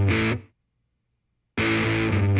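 Electric guitar sample through SoundTrap's overdrive effect, a short distorted chord phrase. It cuts off about half a second in and plays again about a second and a half in.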